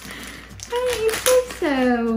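Faint rustling, then a high-pitched voice making two short wordless sounds and a long falling 'ooh' during a diaper change.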